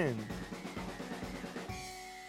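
Background music with a rapid snare drum roll over sustained low tones, slowly fading.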